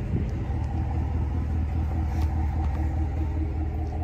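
Pickup truck engine idling: a steady low rumble with a faint even hum above it.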